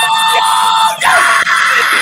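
Several men screaming and yelling at once in a sustained outburst over a late goal in a football match.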